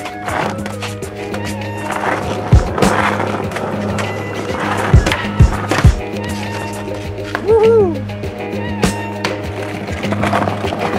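Skateboard on concrete: wheels rolling and the board snapping and landing, with a few sharp thumps in quick succession about halfway through, under a music soundtrack with a steady low drone.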